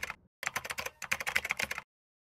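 Computer keyboard typing sound effect: a rapid run of keystroke clicks in short bursts, stopping suddenly near the end.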